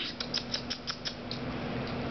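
Small terrier's claws clicking on a hard floor as she walks: a quick run of light ticks in the first second, then one more.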